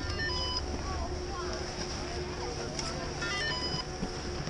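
Ski-lift electronic ticket gate beeping as passes are read: a quick run of short beeps at several pitches right at the start, and another about three and a half seconds in.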